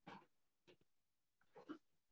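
Near silence: quiet room tone with a few faint, brief sounds, the last shortly before the end.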